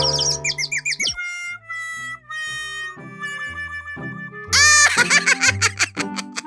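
Cartoon background music with quick bouncy, chirping sound effects and a falling glide in the first second. From about four and a half seconds in comes a cartoon character's high-pitched giggling.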